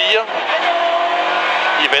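Ford Escort RS2000 16-valve rally car's engine running hard under load, heard from inside the cabin, holding a fairly steady note.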